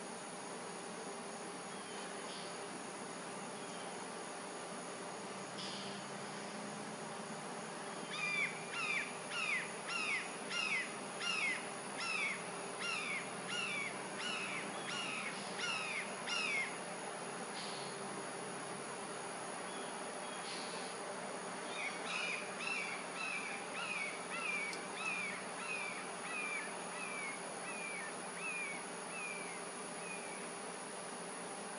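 Red-shouldered hawk calling two long series of repeated down-slurred notes, about two a second, the second series fading toward its end. A steady high insect drone runs underneath.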